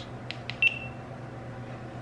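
Two small button clicks on a GoPro Karma Grip gimbal handle, followed about half a second in by one short high beep from the GoPro Hero5 camera as it responds to the button.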